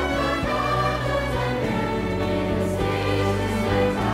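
Orchestra playing live music with a choir singing.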